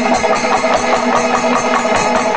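Kerala panchavadyam temple ensemble playing full out: a dense, fast roll of timila and maddalam drumming with ilathalam cymbals clashing in a steady quick pulse. Curved kombu horns are held in long steady notes over the drumming.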